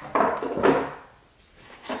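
Packaging handled and set down, likely the clear plastic bulb tray: a loud scraping clatter lasting under a second, then a short rustle of cardboard just before the end.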